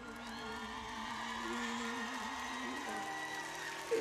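A male vocalist holds a long note with vibrato over soft band backing, the note ending about three seconds in, while the audience cheers and whoops; the singing picks up again right at the end.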